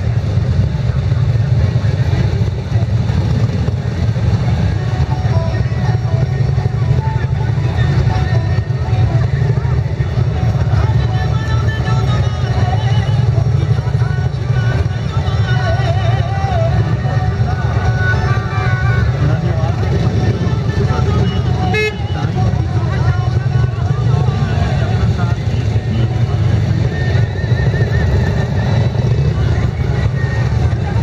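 Group of V-twin touring motorcycles idling with a steady low rumble as they creep forward in formation, over crowd chatter.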